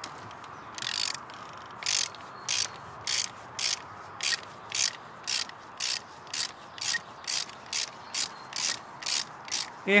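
Hand ratchet wrench clicking in short back-and-forth strokes, about two a second, working a seized glow plug loose from the cylinder head of an Audi Q7 diesel engine.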